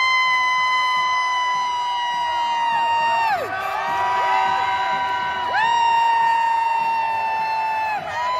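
Horns blown in long held blasts, each about three seconds, several overlapping, each sagging in pitch as it stops. Underneath is a cheering crowd.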